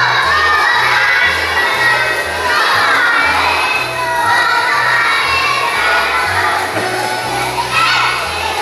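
A group of young children singing loudly, close to shouting, over a musical accompaniment with a steady bass line.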